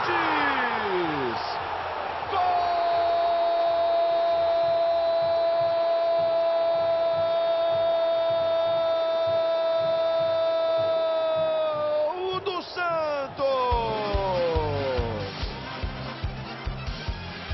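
Brazilian TV commentator's long drawn-out 'gooool' cry for a goal, held on one pitch for about ten seconds over stadium crowd noise, dipping slightly as it ends. Near the end, falling vocal glides give way to music with a steady beat.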